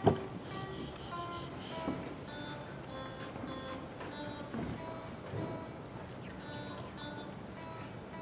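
Electric guitar played through a small combo amplifier, picking a melody of single notes, about one to two a second, with a sharp, loud attack right at the start.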